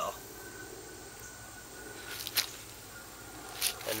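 Faint steady hiss with two short clicks about a second apart in the second half, from handling a plastic bottle while hydrogen peroxide is poured onto a leg cut.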